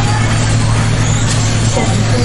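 Kyosho Mini-Z 1/28-scale RC cars racing on carpet, their small electric motors whining up and down in pitch as they accelerate and brake, over a loud steady hum.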